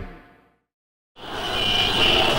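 The programme's theme music ends, its last notes fading out, followed by a moment of silence. About a second in, a steady rushing noise with a high steady tone fades in.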